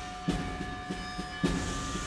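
Concert band playing a passage that imitates a steam train. Two sudden hissing strokes come about a quarter second and a second and a half in, over sustained held notes.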